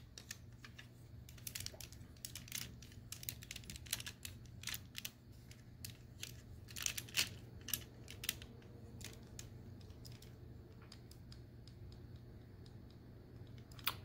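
Small, faint clicks and taps of plastic toy joints and parts as a Transformers Generations Skullgrin action figure's legs are bent and posed by hand. The clicks come irregularly, thicker in the first part and thinning out later.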